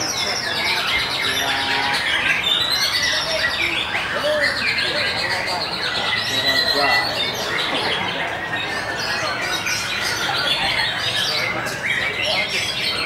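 White-rumped shama singing a dense, varied run of whistles, quick glides and chattering phrases without a break, with people's voices in the background.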